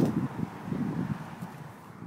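Wind buffeting the microphone in a low rumble that dies away toward the end.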